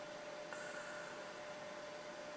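Low background hiss with a steady electrical hum from the recording setup. About half a second in there is a faint click, followed by a brief, faint high tone.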